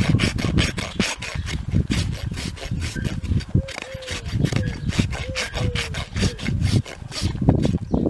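Farrier's hoof rasp filing the underside of a horse's hoof during a trim, in a quick run of rough back-and-forth strokes.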